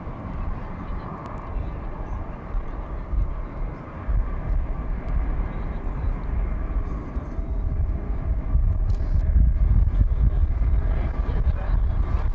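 The four jet engines of Air Force One, a Boeing 707 (VC-137C), running at taxi power as the plane rolls toward the microphone: a steady low rumble with turbine hiss, growing louder about eight seconds in as it comes closer.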